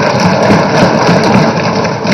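A hall full of legislators applauding: a loud, dense, steady clatter of clapping and desk-thumping with no speech in it.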